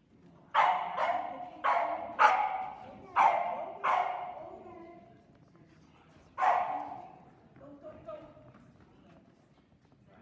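A small dog barking sharply: six barks in quick, uneven succession, then one more a couple of seconds later, each ringing on briefly in a large, echoing hall.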